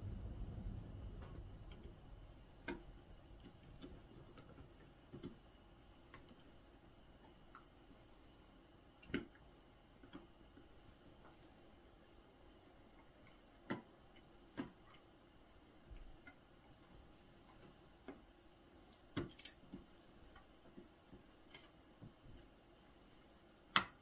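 An English Shepherd dog gnawing on a shed antler: sparse, irregular clicks and scrapes of teeth on antler, a few sharper than the rest.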